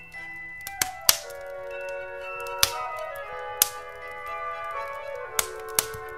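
Instrumental Christmas music with long held notes, over a crackling wood fire whose sharp pops and snaps stand out about six times.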